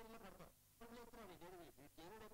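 Very faint talking from people in the room, coming in short snatches with brief gaps, close to silence.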